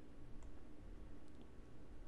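A few faint clicks from a computer mouse over quiet room tone.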